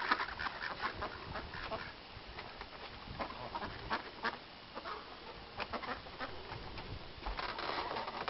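Ducks quacking in short, scattered calls.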